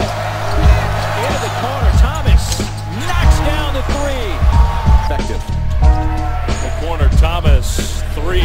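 Background music with a steady bass line, mixed over basketball game audio: sneakers squeaking on the hardwood court and a ball bouncing, with a commentator's voice underneath.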